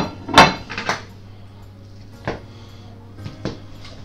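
A plate set down on a table, clattering with two sharp, ringing knocks at the start and about half a second in, followed by a few lighter knocks and clinks.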